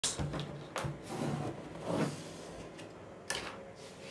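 Quiet rustling of pattern paper being handled on a table, with a couple of sharp light clicks.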